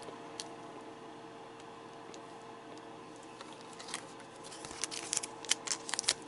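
A foil booster pack being picked up and handled: a quiet stretch, then a cluster of short crackles and clicks in the second half. A steady faint hum runs underneath.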